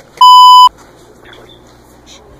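A single loud electronic bleep, one steady pitch held for about half a second right at the start and then cut off cleanly: a censor bleep edited over the audio.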